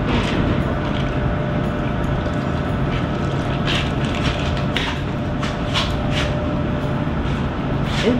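A cocktail strained from a metal shaker into a martini glass over a steady mechanical hum in the room, with a few light clinks of metal and glass from about halfway through.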